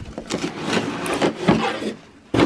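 Cardboard shipping box rustling and scraping as a hand rummages inside it and pulls the contents out, with a couple of sharp knocks.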